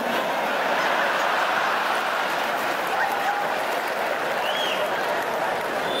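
A large audience laughing and applauding in one steady wash of sound, with a few single voices rising out of it.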